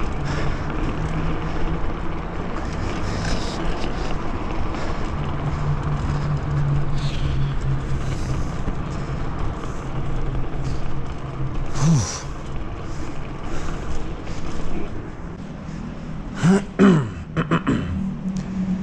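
BMX bike rolling over paved ground: steady noise of the tyres and wind on the chest-mounted camera's microphone, with scattered clicks and rattles from the bike. A brief falling squeal comes about twelve seconds in, and a few short pitched sounds near the end.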